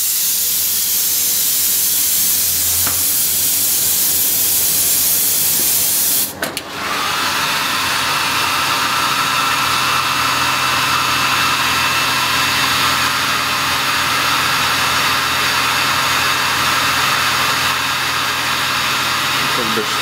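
Compressed-air gravity-feed paint spray gun hissing as it sprays a test panel, stopping after about six seconds. About a second later a handheld hair dryer starts and runs steadily with a motor whine, force-drying the fresh paint coat between layers.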